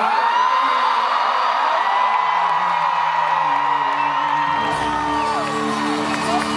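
Live stadium concert: a crowd whooping and screaming, many short rising and falling cries, over one long high held note. Low bass notes from the band come in about four and a half seconds in.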